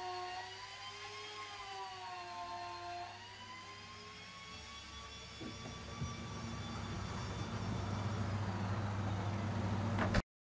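Electric ice-carving power tool whining with a slowly wavering pitch, fading out about halfway through. A low, steady machine hum then takes over and grows louder toward the end.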